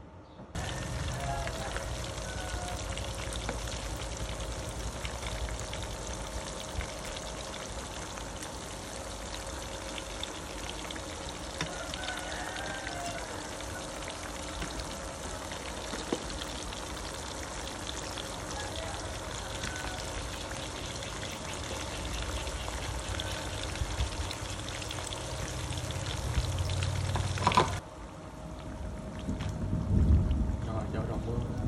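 Batter-coated salmon belly strips sizzling as they shallow-fry in hot oil in a pan: a steady, dense hiss that starts abruptly about half a second in and cuts off suddenly near the end.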